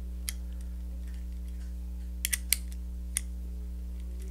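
A few sharp metal clicks of an open-end wrench on a pulley's nylon lock nut and bolt: one near the start, three in quick succession a little past two seconds in, and one more shortly after, over a steady low hum.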